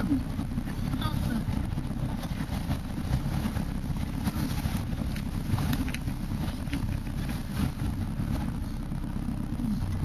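A 4x4's engine and drivetrain driving along a rough dirt track, heard from inside the cab: a steady low rumble with scattered knocks and rattles.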